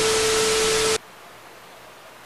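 TV-static transition sound effect: loud hiss with a steady mid-pitched beep, cutting off suddenly about a second in and leaving a faint hiss.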